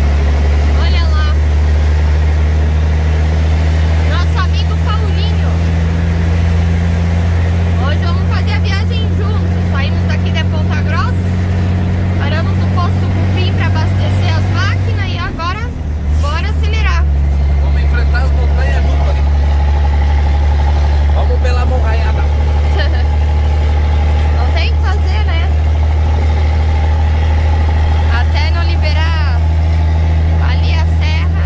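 Scania 113H truck's six-cylinder diesel engine droning steadily inside the cab while cruising on the highway. Halfway through the drone briefly dips and breaks off for about a second, then comes back as steady as before.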